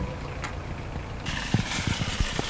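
Open-air car-park background with a low traffic hum. It is muffled for the first second, then becomes fuller and brighter, with a few short knocks and rattles near the end.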